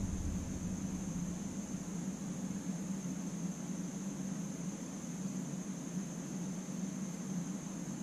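Steady background room noise: a constant low hum with a faint high-pitched whine and an even hiss, and no handling sounds.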